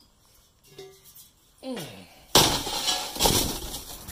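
A short "hey", then a sudden loud clatter with rustling about halfway through that lasts over a second, with a sharper knock near the end.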